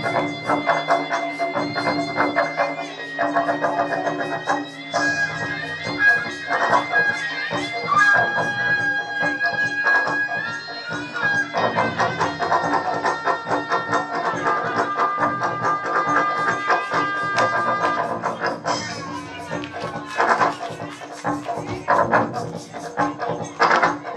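Traditional dance accompaniment music: a shrill reed wind instrument plays long held notes that now and then slide, over fast, dense drumming.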